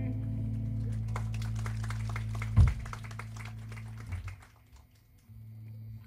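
Electric guitar band's final chord ringing out and fading, with scattered clapping from a small audience for a few seconds and one loud thump about two and a half seconds in. A steady low amplifier hum returns near the end.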